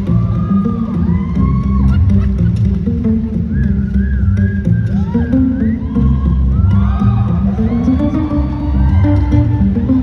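Solo acoustic guitar played live through an arena sound system in an instrumental passage, with a busy low bass line under the melody. Audience members whoop and cheer over the playing.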